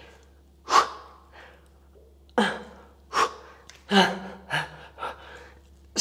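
A woman's sharp, forceful breaths, about five short bursts in six seconds, from the exertion of plank knee-to-elbow repetitions.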